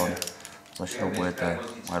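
A man speaking, with a few light metallic clicks early on as a maillon is handled against the swivel eye of an aluminium carabiner.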